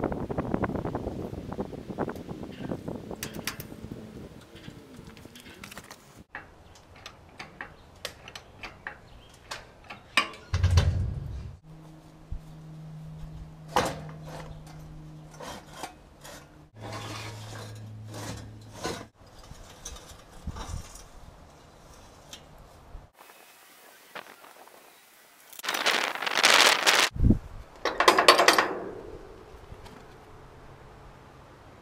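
Scattered metal clinks and knocks, with some rubbing, from handling jack stands and trailer hardware under a steel boat hull. Two louder noisy bursts come near the end.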